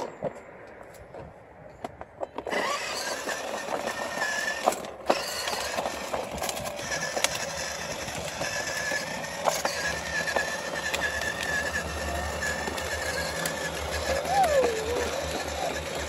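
Small electric motor of a ride-on toy scooter, whirring with a steady, slightly wavering whine as it drives along. The motor starts about two and a half seconds in.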